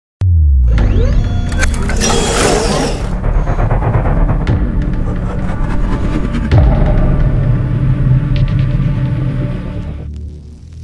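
Logo-intro music with a heavy bass drone and rushing sound effects. It starts suddenly with a deep low sweep, has a bright rushing burst about two seconds in and another hit at about six and a half seconds, and fades near the end.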